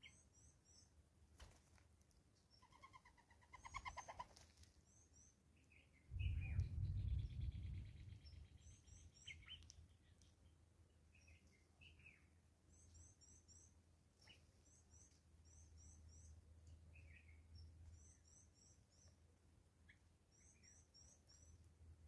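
Faint, high-pitched 'tsee-tsee-tsee' calls of blue waxbills, in short runs of three or four thin notes that recur every few seconds. Another bird's brief trilling song comes about three seconds in, and a louder low rumble and rustle lasts about two seconds from about six seconds in.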